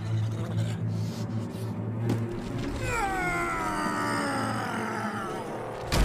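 A man's long, straining yell of effort, falling in pitch, starting about three seconds in, as he heaves up a heavy boulder, over background music.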